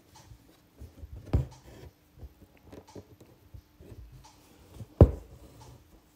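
Hand embroidery: a needle pushed through taut fabric and six-strand embroidery thread drawn through after it, soft scratching and light ticks, with two sharper taps, one about a second and a half in and a louder one about five seconds in.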